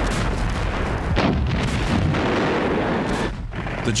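Battle sounds of gunfire and exploding shells over a continuous low rumble, with sharp blasts near the start, about a second in and about three seconds in.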